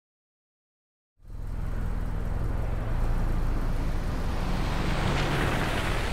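Steady car sound, a low engine hum under road and traffic noise, starting suddenly about a second in and building slightly.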